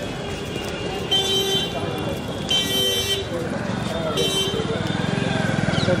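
Road vehicle horns honking three times: a half-second toot about a second in, a longer one at two and a half seconds, and a short one after four seconds, over crowd chatter and street noise. An engine is running close by in the second half.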